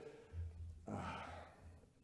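A man's sigh: one breathy exhale into a close microphone about a second in, fading out.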